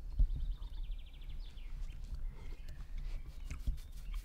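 A songbird sings a short phrase of quick high notes ending in a fast trill, about a second in, over a steady low rumble on the microphone. A sharp knock comes just after the start and another near the end.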